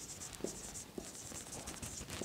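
Marker pen writing on a whiteboard: a faint, high scratchy squeak in a series of short strokes.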